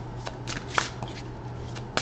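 A deck of tarot cards being shuffled by hand: a few irregular soft flicks and snaps of the cards, the sharpest just under a second in and again at the end.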